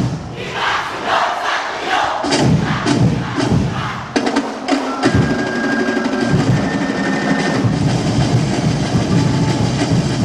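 Festival drum and percussion ensemble playing for a tribe's street dance, with the performers shouting together through the first few seconds before the drums carry on alone.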